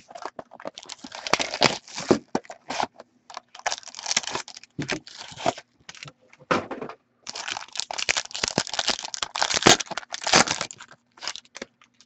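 Wrapping and packaging of a sealed trading card box being torn open and crinkled, in irregular rustles and rips, as the cards are pulled out.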